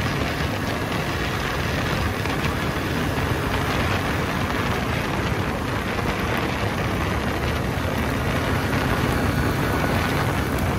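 Yamaha Grizzly 700 ATV running at a steady trail-riding speed: its engine runs evenly under a steady rush of wind and tyres on a dirt track.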